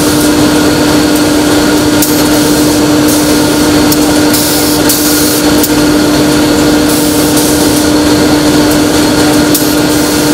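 Bottle production-line machinery running loudly: a steady droning hum with one constant tone over dense machine noise, broken by irregular short bursts of hiss.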